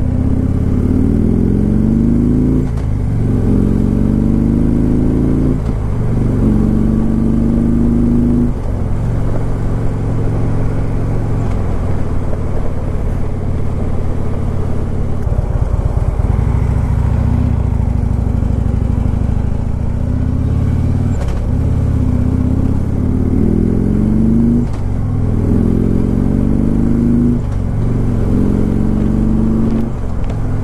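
2015 Harley-Davidson Freewheeler trike's Twin Cam 103 V-twin on its stock exhaust, heard from the rider's helmet: the engine pitch rises and drops three times in the first nine seconds as it pulls up through the gears, runs lower and steadier through the middle, then rises through three more gears near the end. Wind and road noise run underneath.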